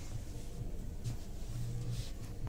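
Steady low rumble with a hum, and brief soft rustles of clothing being handled on a hanger at the start and about a second in.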